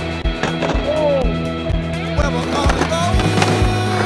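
Music with a steady beat and held bass notes, over a skateboard on concrete, with a few sharp clacks of the board.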